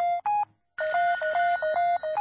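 Rapid electronic telephone-ring beeps opening an electronic music track: short pitched tones repeating about five a second. They break off briefly about half a second in, then resume over a high, steady whine.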